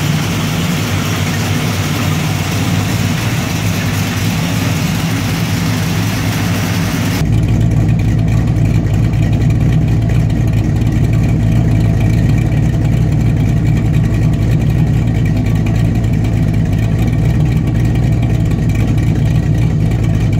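Small-block Chevy V8 running steadily on an engine dyno. About seven seconds in, the sound switches to the exhaust outlets outside the dyno cell: the same steady running, lower and duller, with the hiss gone.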